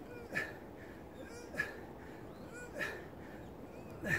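A man's strained, whimpering exhalations, three of them evenly spaced about a second and a quarter apart, one with each overhead squat rep.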